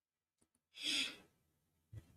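A person breathing out audibly into a close microphone, a single breath about half a second long near the middle, just after two faint mouth clicks; before it the track is silent.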